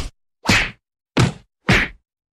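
Cartoon punch sound effects: a series of sharp whacks with about half-second gaps, four in two seconds, as one character beats up another.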